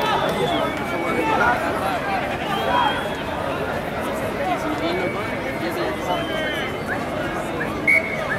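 Indistinct overlapping voices of players and spectators calling and chattering, with one short, sharp blast of a referee's whistle near the end.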